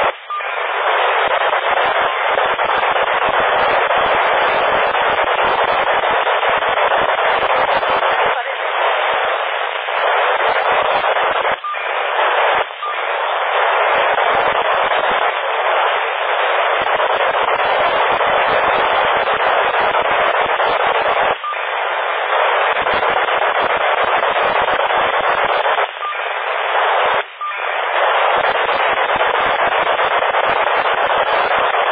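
Loud, steady FM static hiss from a PMR446 handheld radio receiver, narrow-band like a two-way radio's audio. It drops out briefly a few times, near the start, around the middle and near the end.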